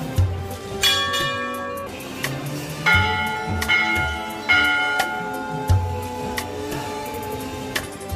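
Metal bells struck four times in the first half, each strike ringing on, over devotional background music with a low drumbeat.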